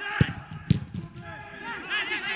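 A football being struck: two sharp thumps about half a second apart, the second crisper, over voices.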